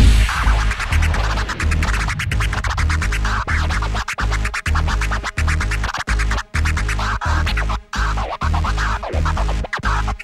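Hip-hop record being scratched by hand on a Technics turntable over a steady bass beat. The sound starts abruptly and is chopped into rapid short strokes, with frequent brief dropouts.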